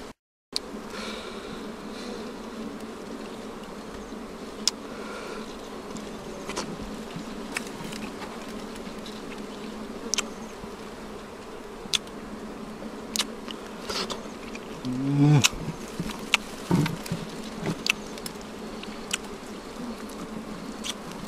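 Honey bees buzzing in a steady drone around a freshly cut wild honeycomb, with scattered small clicks from handling the comb. The buzz swells briefly louder about three-quarters of the way through.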